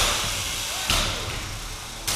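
Two hits about a second apart as a 12 lb combat robot's spinning blade strikes an opponent robot, each followed by a noisy rush that fades away.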